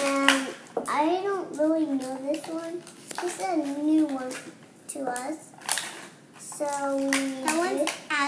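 A young girl's voice making drawn-out, sing-song sounds rather than words, with clicks and rustling from small plastic toys and blind-bag packaging being handled.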